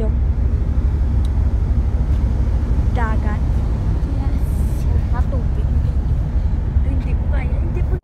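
Loud steady low rumble on a ferry's open deck: wind on the microphone over the ship's running engines, with a couple of brief words from a voice about three and five seconds in.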